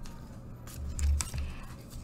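Faint handling sounds on a tabletop: a few light clicks and rustles, with a soft bump about a second in, as something is picked up and discarded.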